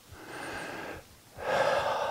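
A man breathing heavily: two audible breaths, the second louder and starting about halfway through.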